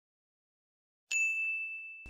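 A single bright ding sound effect about a second in, ringing on and slowly fading. It marks the reveal of the quiz answer as the countdown ends.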